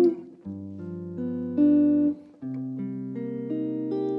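Clean electric guitar playing the chords of a minor-key two-five (D minor 7 flat 5, G7, C minor 7). Two chords start about half a second and two and a half seconds in. Each is picked one string at a time from low to high and left ringing.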